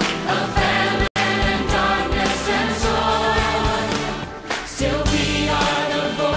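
Music with a choir of voices singing over a steady beat; the sound cuts out for an instant about a second in.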